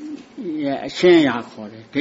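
Speech only: an old man's voice speaking slowly, in a sermon.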